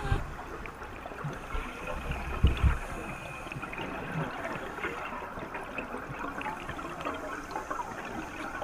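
Underwater recording of a scuba diver's exhaled bubbles from the regulator: a steady bubbling and gurgling. Two low thumps come about two and a half seconds in.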